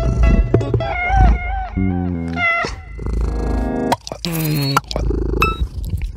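Lo-fi experimental collage music: a wavering, sliding melody line over stepping lower notes, then a dense buzzing chord about three seconds in, followed by a loud falling pitched sound and a few sharp clicks near the end.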